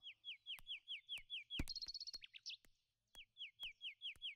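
A bird singing faintly: a run of quick downward-slurred whistles, about four a second, ending in a rapid high trill; after a short pause the whistles start again near the end.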